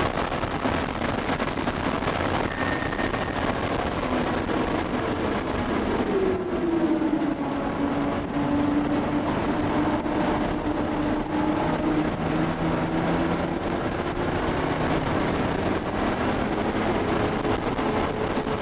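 Cabin sound of a 1979 Porsche 930 Turbo at track speed: its turbocharged air-cooled flat-six running under heavy road and wind noise. About six seconds in the engine note drops sharply, then keeps sinking slowly for several seconds before steadying.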